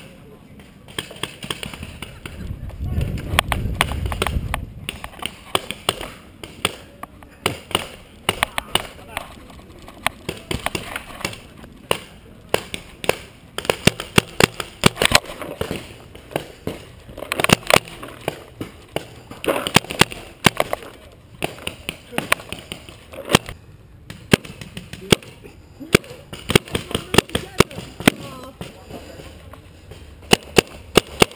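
Paintball markers firing: sharp pops in irregular bursts and quick strings throughout. A low rumble about two to four seconds in.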